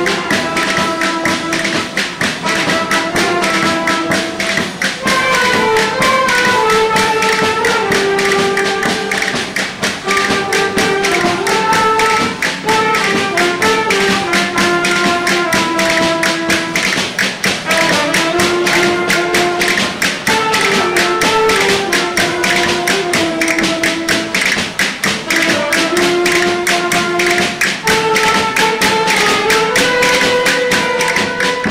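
Folk string band of acoustic guitars and other plucked instruments playing a lively instrumental tune: a stepping melody over a fast, even strummed rhythm.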